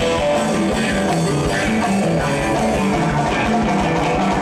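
A live funk band playing at full volume: a bass line of short notes stepping up and down, guitar, and drum kit.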